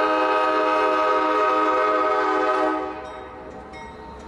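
A CSX freight locomotive's air horn sounds one long, steady chord of several notes as the train approaches a grade crossing. It cuts off about three quarters of the way through, leaving the quieter sound of the approaching train.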